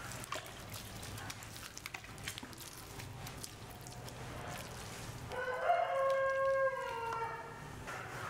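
A metal ladle scraping and clicking against a plastic bucket as bait mash is stirred. About five seconds in, a rooster crows once for about two seconds, its call dropping in pitch at the end.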